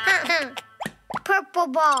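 Cartoon toddler's voice giggling and vocalizing, broken by a few short plop sound effects about half a second in, as plastic balls tumble from a ball pile.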